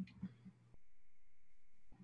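Faint room tone over a video-call microphone: a few soft clicks in the first half second, then a low steady hiss that switches on and cuts off abruptly about a second later.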